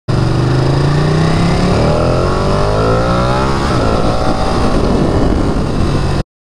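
Ducati Panigale 959's 955 cc L-twin engine accelerating hard, its pitch climbing steadily for about three and a half seconds. The pitch then breaks off and the sound turns rougher as the bike shifts up.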